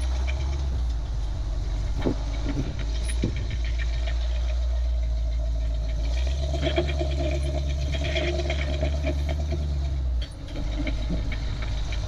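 Rock-crawling buggy's engine running under load as it climbs a rock ledge, with a couple of knocks in the first few seconds. About halfway through the throttle comes up for a few seconds, then drops off suddenly.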